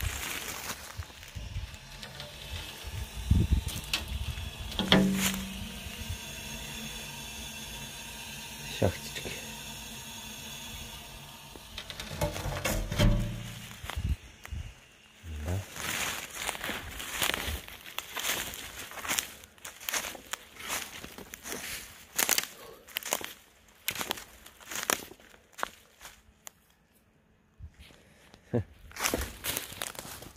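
Footsteps crunching through dry fallen leaves on a forest floor, about two steps a second, through the second half. Before that there are a few scattered knocks and thuds.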